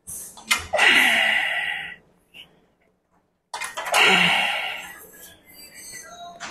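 A man's forceful, breathy exhalations through clenched teeth, each ending in a grunt that falls in pitch, while straining through a heavy set on a leg extension machine. Two such breaths, one at the start and another about three and a half seconds in.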